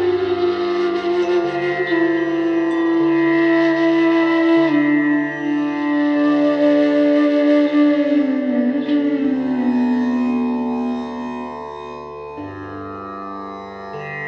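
Instrumental music in an Indian classical style: a slow melody of long held notes that glide in pitch, over a steady low drone.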